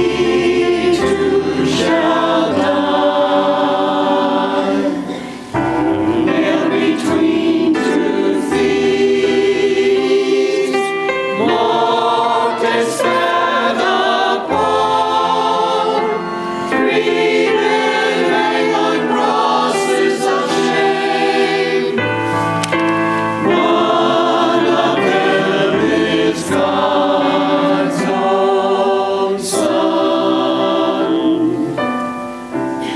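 Mixed-voice church choir singing an anthem in sustained phrases, with a short break between phrases about five seconds in.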